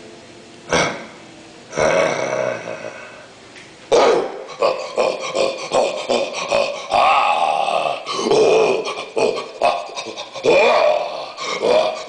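Animatronic yeti's recorded growls and grunts: a few short grunts, then from about four seconds in a near-continuous run of growling.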